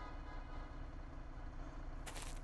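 A steady low hum with faint held tones above it, slowly growing louder after fading up from silence.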